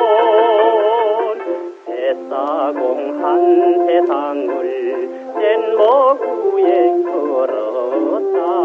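Old Korean popular song from a 1962 record: a male singer sings a melody with wide vibrato over band accompaniment. The sound is thin and narrow, without deep bass or high treble.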